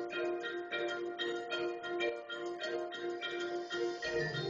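Percussion ensemble playing a repeating figure on pitched mallet percussion: a steady run of evenly spaced struck notes, each ringing on in a bell-like way.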